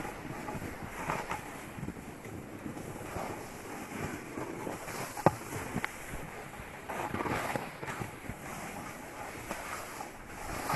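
Snowboard sliding and scraping over snow, with wind buffeting the microphone. There is a sharp knock about five seconds in.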